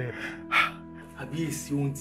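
Soft background film music with sustained held chords, over which a man's breathy gasps come near the start, followed by a man's voice.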